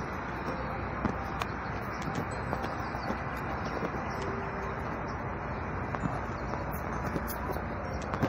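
Steady outdoor street ambience: a haze of traffic and wind noise on a phone microphone, with a few faint ticks and a brief low tone about four seconds in.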